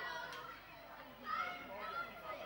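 Indistinct background voices of several people talking, swelling briefly about two-thirds of the way through.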